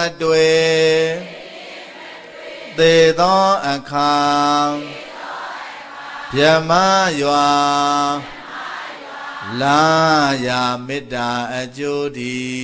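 A Buddhist monk chanting verses through a microphone in a single male voice: long drawn-out phrases about every three seconds, each swelling up in pitch and then held on a steady low note, with short breaks between.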